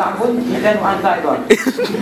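A man talking into a handheld microphone, then coughing sharply into it about one and a half seconds in.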